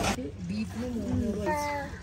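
A toddler's voice babbling without words in a wavering sing-song, ending in a longer, higher-pitched note.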